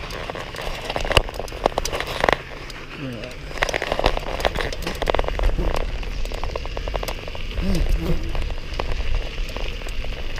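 Bicycle tyres rolling over a gravel-surfaced trail, with constant crackle and irregular clicks and rattles, over a low rumble of wind on the camera's microphone.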